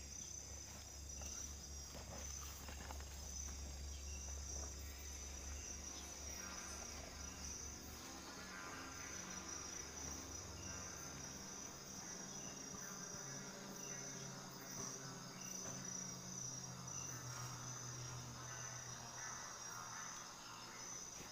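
A steady chorus of crickets chirping, a high rapid pulsing that runs on without a break, with a low hum underneath that fades out about a third of the way through.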